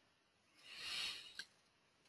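A faint breath drawn in through the mouth about half a second in, lasting well under a second, followed by a tiny click.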